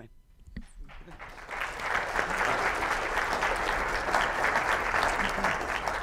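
Audience applauding: a few scattered claps that build within about two seconds into steady applause.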